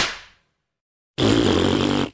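Edited-in cartoon sound effects: a sharp hit at the start that fades within half a second, then, just over a second in, a buzzy, rasping noise lasting about a second.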